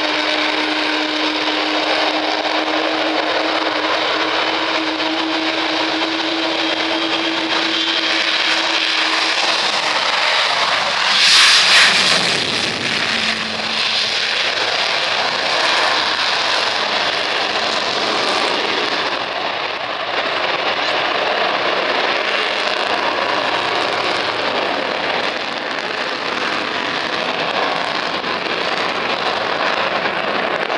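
Avro Vulcan XH558's four Rolls-Royce Olympus turbojets at full power through the takeoff and steep climb-out: a loud, steady jet roar carrying a held tone for the first ten seconds, with a brief louder rush about eleven seconds in.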